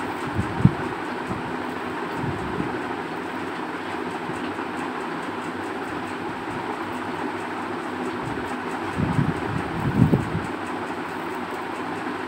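Steady fan-like whooshing noise, with a few soft low knocks as the circuit board is handled and soldered: one about half a second in and a small cluster around nine to ten seconds.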